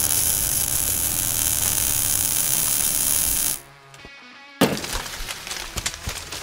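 Logo-reveal sound effect: a loud, steady hiss that cuts off about three and a half seconds in, then a sudden sharp hit with crackling about a second later.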